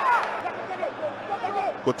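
Faint shouting voices from the pitch over a steady stadium background noise. A commentator's voice begins right at the end.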